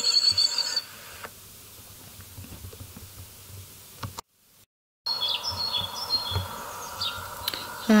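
Small songbird chirping: short high notes, some falling in pitch, over a steady hum, starting about five seconds in after a brief cut-out. A high steady tone fades out in the first second.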